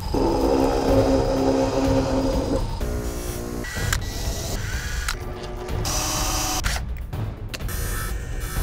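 Motor whine of an abrasive chop saw cutting metal for about the first two and a half seconds, then shorter machine sounds that change every second or so, including a drill press boring aluminium, over background music.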